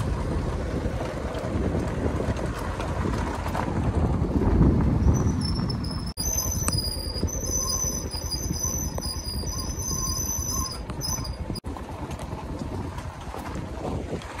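Motorcycle riding along a rough hill road: a steady low rumble of engine and wind, broken by a few abrupt cuts. A high-pitched whine of several steady tones rides over it for about five seconds in the middle.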